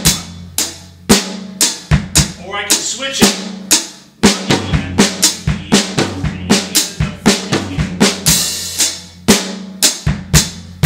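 Acoustic drum kit playing a rock groove: bass drum and snare with tom-tom strokes worked into the beat. There is a short break about four seconds in and a cymbal crash about eight seconds in.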